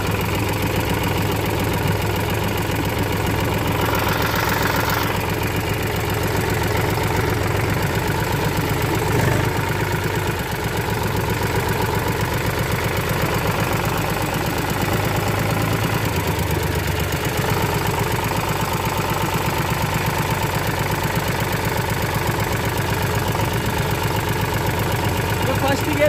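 Farm tractor's diesel engine running steadily as the tractor is driven, with a rapid, even firing beat and a low hum.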